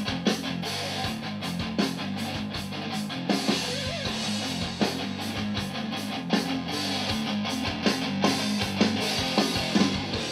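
Electric guitar being played in a rock style over a steady drum beat, as when recording a guitar part along with the band's track.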